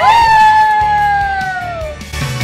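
A voice holds one long, loud, high note that slowly sinks in pitch and trails off near the end. At the very start it briefly overlaps a group of other singing voices.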